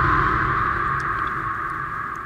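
An edited-in dramatic sound effect: the slowly fading tail of a low boom that hit just before, with a noisy, ringing band above it dying away gradually.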